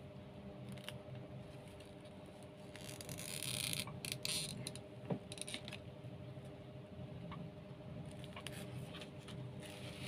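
Light rustling and scraping of jute twine and craft materials being handled on a tabletop, loudest in a few short bursts about three to four and a half seconds in, over a steady faint hum.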